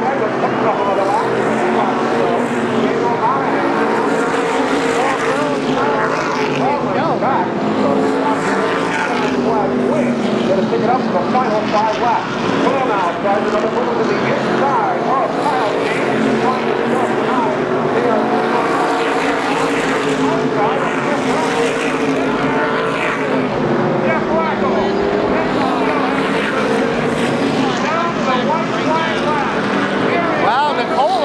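A pack of SK Modified race cars with small-block V8s running at racing speed around a short oval, heard from trackside: a steady, loud blend of engines whose pitch keeps rising and falling as the cars pass and go through the turns.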